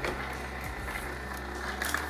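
Vertical slow (masticating) juicer motor running with a steady low hum, with a few faint clicks as apple is fed and pressed.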